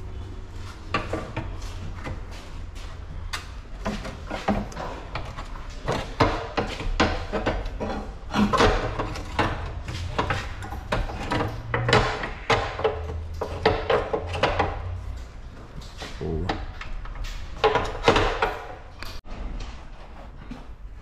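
Repeated metallic knocks, clanks and clicks of hand tools and suspension parts as the bolts of a new front control arm are fitted to a Peugeot 206, over a steady low hum.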